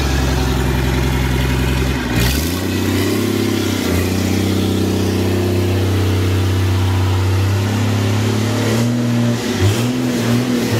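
Mitsubishi 6D17 inline-six diesel engine running on its first start, described as a beautiful little runner. About two seconds in it is revved up and held at a higher speed, and near the end the throttle is blipped up and down.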